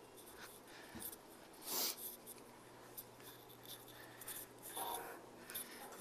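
Faint steady hum of a roomful of freshly powered-up arcade and pinball machines, with soft rubbing and clicking handling noises and one brief louder rustle about two seconds in.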